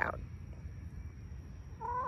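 A hen gives one drawn-out, slightly rising call near the end, over a low steady rumble.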